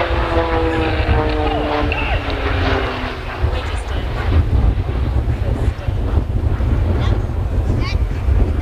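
Pilatus PC-9 turboprop passing, its propeller drone of several tones falling slowly in pitch over the first three seconds or so as it goes by. Wind rumbles on the microphone throughout.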